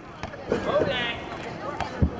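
A few dull thuds of wrestlers' bodies hitting the ring mat, with people shouting in between; the heaviest thud comes at the very end.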